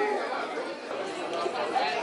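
Several people's voices chattering over one another, with a cheer of "woo" at the very start.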